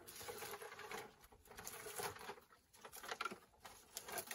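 A gloved hand rummaging among charred sticks in a hole in a clay wall, with irregular scraping, rustling and small clicks as the pieces shift.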